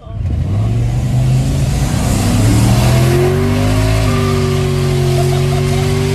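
Mercury Marauder's 4.6-litre 32-valve V8 under hard acceleration, heard from inside the cabin. The engine note climbs steadily for about four seconds, then holds nearly level at high revs over air and road noise.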